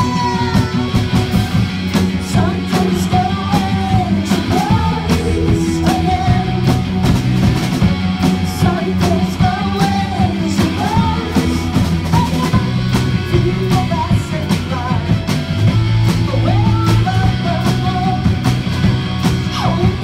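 Indie rock band playing live: a lead vocalist singing over electric guitars, bass guitar and a steady, busy drum beat.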